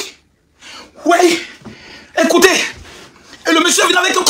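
A man's voice in three short, emotional vocal bursts with brief pauses between, the first after a short silence. These are exclamations rather than words the transcript caught.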